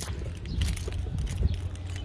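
Light jingling and clicking as someone walks down a step holding the camera, over a low rumble of wind on the microphone.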